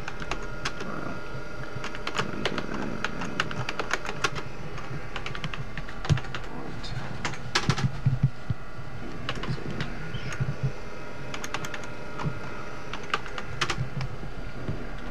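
Typing on a desktop computer keyboard: irregular runs of key clicks with short pauses between them, busiest about halfway through. A steady low hum runs underneath.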